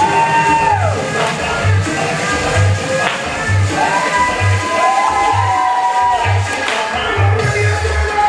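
Loud upbeat dance music for a Zumba class, with a steady bass beat a little under once a second. A held melody line glides down about a second in, and another comes in around four seconds in.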